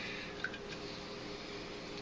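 Quiet kitchen room tone: a faint steady hum with one small click about half a second in.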